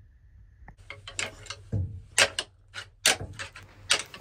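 A pair of deer antlers knocked and clacked together: antler rattling, an irregular run of sharp clicks starting about a second in, loudest in the second half. The rattling imitates two bucks fighting, to draw a buck in.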